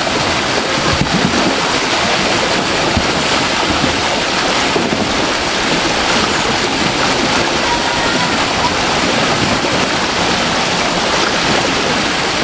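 Water pouring over a small weir into a channel, a steady loud rushing and churning, the flow high with snowmelt.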